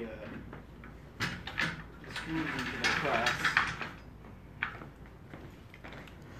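Knocks, clacks and a stretch of scraping as a screen-printing screen frame is handled and slid into a flatbed screen-printing press, with a last sharp knock near the end.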